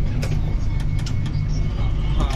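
Airport people-mover train running along its elevated guideway, heard from inside the car: a steady low rumble with scattered light clicks and rattles.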